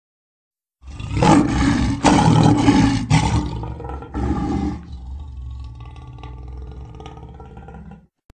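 A big cat's roar, laid on as a sound effect: after a short silence, four loud roars follow one another over about four seconds, then a lower rumble fades away.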